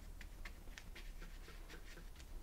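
Paintbrush dabbing and scrubbing acrylic paint onto paper: faint, quick, irregular scratchy strokes, several a second.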